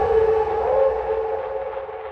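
Closing tail of a sped-up electronic track: a single sustained synth chord with a slightly wavering pitch rings on alone and fades steadily.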